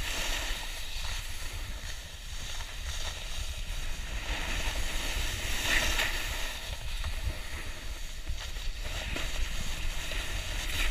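Wind buffeting the camera microphone with a low rumble, over the hiss of edges scraping across packed snow while riding downhill; the scraping swells and fades, loudest about six seconds in.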